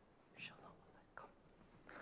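Near silence with faint whispering, a few short hushed bursts, and one soft click just past the middle.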